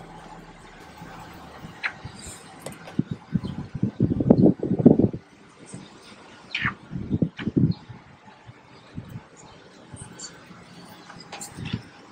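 Wind buffeting a phone's microphone outdoors: irregular low rumbling gusts, strongest about three to five seconds in and again around seven seconds, over a faint outdoor background.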